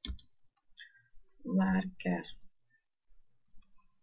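Computer keyboard keystrokes: a few short, sharp key clicks at the start and again near the end. A brief voiced murmur comes in the middle.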